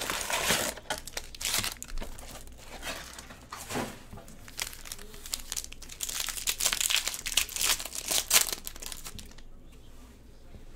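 Plastic wrapping and a trading-card pack wrapper crinkling and tearing as they are ripped open by hand. Irregular crackly bursts, heaviest in the first second and again between about six and eight and a half seconds, dying away near the end.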